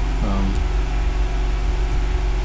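Steady low electrical hum on the recording, a constant buzz at mains frequency and its overtones, with a brief murmured voice sound early on and two faint clicks.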